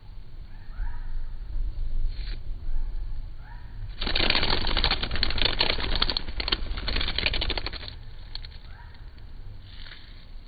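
A giant Christmas beetle caught in a redback spider's web beats its wings in a buzzing, fluttering rattle for about four seconds, starting near the middle. It is struggling to fly free of the sticky web.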